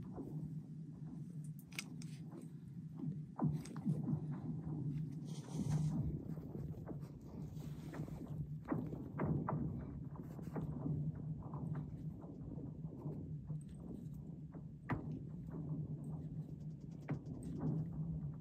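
A low steady hum with scattered light clicks and taps.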